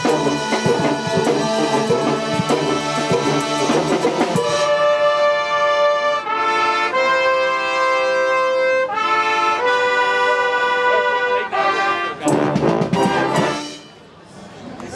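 A village wind band of flutes, clarinets and brass playing. The first few seconds are rhythmic with a drum beat, then the band moves into long held chords. A last full chord comes near the end and dies away.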